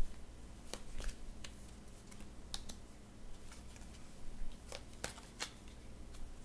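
Tarot cards being handled: soft, scattered card clicks and slides, with a few sharper snaps close together near the end.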